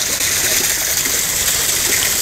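Steady rushing of water flowing through a concrete channel.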